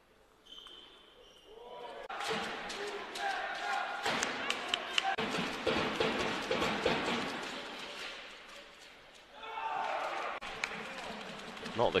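Table tennis rally: the ball clicking off the bats and bouncing on the table in quick succession, starting about two seconds in, with crowd voices and shouts in a large hall. The voices rise again near the end once the rally is over.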